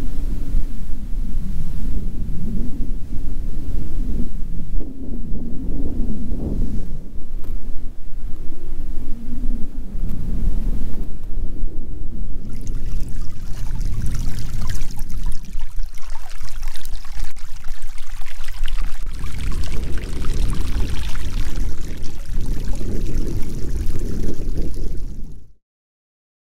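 Wind rumbling on the microphone. From about halfway, a steady hiss of shallow water running over stones and seaweed at the shoreline joins in. Both cut off suddenly just before the end.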